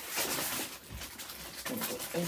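Plastic sleeve around a rolled diamond-painting canvas crinkling and rustling as it is pushed and rolled by hand on a tabletop.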